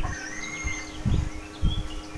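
Steady electrical hum from a small electric fan running off a solar battery inverter, with a few faint bird chirps and irregular low rumbles.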